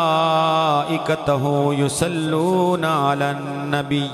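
A man's voice in melodic Arabic Quranic recitation, drawn out in long held notes that waver and glide in pitch, with short breaks between phrases.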